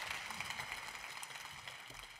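Applause from the members of a parliamentary chamber, a steady patter of many hands clapping that grows quieter toward the end.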